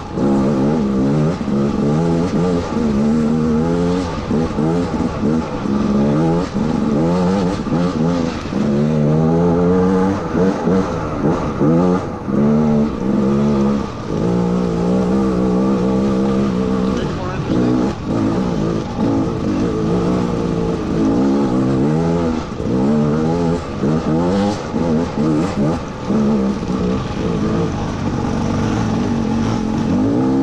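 Gas Gas EC200 two-stroke single-cylinder dirt bike engine being ridden hard, its pitch climbing and dropping every second or two as the throttle is opened and closed on the twisty trail.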